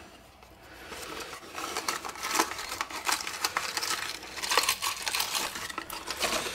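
Small cardboard box being opened and handled, the paper crinkling and rustling in irregular bursts, with light clicks from the small brass parts inside. It starts softly and builds about a second in.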